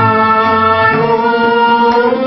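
Group singing: several voices, women's among them, sing together and hold a long, steady note over harmonium accompaniment.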